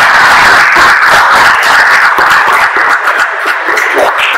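Audience applauding, a dense clapping that begins to thin out near the end.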